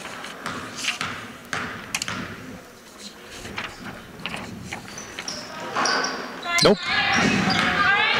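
Basketball bouncing a few times on a hardwood gym floor as the shooter dribbles at the free-throw line. Near the end, voices and crowd noise rise as the free throw misses.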